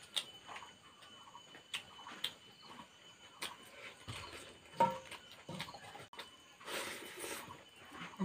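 A man eating with his fingers, chewing with scattered soft mouth clicks and smacks, and a short breathy sound near the end.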